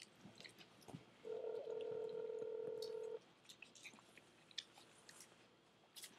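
Telephone ringback tone heard through a phone's speaker: one steady ring of about two seconds, starting a little over a second in, while the outgoing call waits to be answered. A few faint clicks come before and after it.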